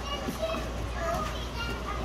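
Background chatter of children's voices in a large, busy room, over a steady low hum.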